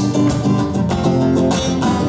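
Acoustic guitar strummed in steady chords.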